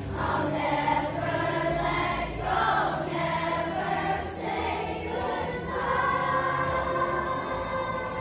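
A group of schoolchildren singing a song together as a choir.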